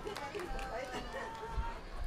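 People's voices talking at a distance, with no music playing.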